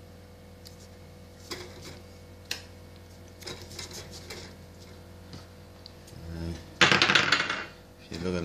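Faint scattered clicks and rustles from hands working thread on a fishing rod blank, over a steady low hum. Near the end comes a loud, rough rustling noise lasting about a second.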